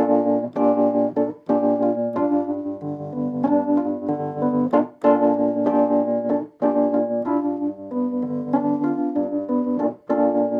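Electric keyboard with an organ-like tone playing a slow run of held chords, changing every half second to a second, with short breaks between phrases and no drums.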